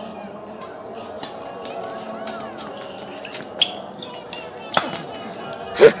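Badminton rackets striking a shuttlecock in a rally: two sharp, crisp hits about three and a half and five seconds in, over steady background chatter. A person laughs loudly right at the end.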